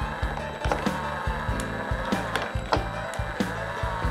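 Open six-speed constant-mesh motorcycle transmission, likely from a Yamaha TT-R225, spinning on a bench fixture driven by a small electric motor. Its gears run with a steady hum and irregular clicks and clacks as the shift fork slides the gear dogs into fourth gear. Background music plays underneath.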